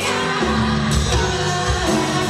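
A live Tejano band plays with accordion, electric bass, drum kit and acoustic guitar, and a woman sings lead over them.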